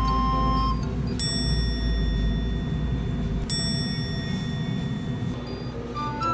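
Two bright bell-like chime strikes, a little over two seconds apart, each ringing on and fading, over a low background music bed.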